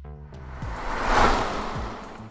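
Background music with a whoosh sound effect: a swell of noise that rises, peaks a little past the middle and fades away, as the title card comes in.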